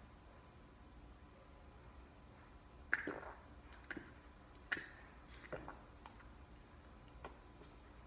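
A person gulping cold cream soda from a plastic cup: faint swallowing sounds, five short gulps spaced about a second apart, starting about three seconds in.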